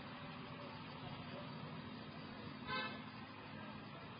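Quiet pause with a steady low hum and faint background noise, broken about three seconds in by one short vehicle horn toot.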